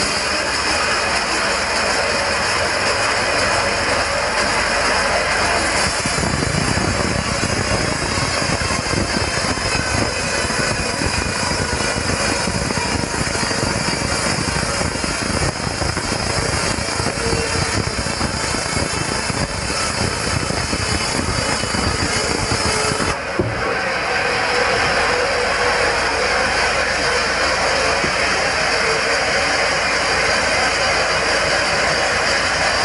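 Band sawmill cutting lengthwise through a red meranti log: the steady running of the mill and the blade in the wood, growing fuller and deeper about six seconds in. There is a brief break about three quarters of the way through.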